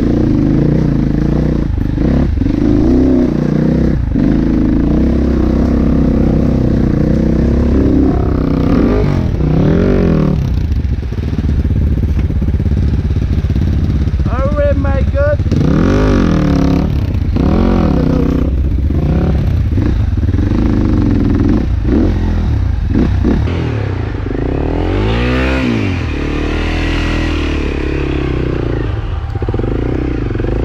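Dirt bike engine revving up and dropping back again and again as it is ridden slowly over a steep, slippery mud trail, with knocks from the bike over the rough ground.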